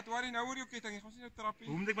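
A person's voice, drawn-out and quavering, with no clear words.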